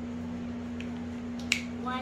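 A single sharp plastic click about one and a half seconds in: a whiteboard marker's cap being snapped onto the marker. A steady low hum runs underneath.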